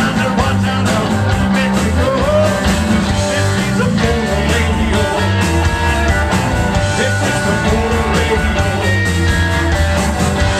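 Live roots-rock band playing: electric guitars, bass and drums keep a steady, loud beat.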